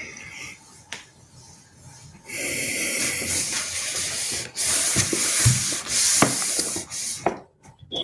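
Rustling and handling noise on a video-call microphone. A loud hiss with scattered clicks and light knocks starts about two seconds in and stops a little after seven seconds.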